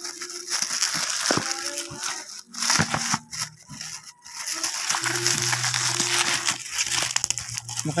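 Plastic courier bag and bubble wrap being crinkled and handled as a parcel is unwrapped: a dense, crackly rustle.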